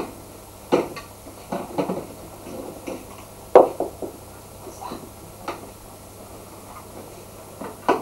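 Plastic toys knocking and clattering against a high chair's plastic tray in a string of scattered knocks, the loudest about three and a half seconds in.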